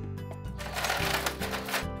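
Ice cubes clattering in a freezer's plastic ice bin as a hand scoops one out. The clatter starts about half a second in and lasts a little over a second, over background music.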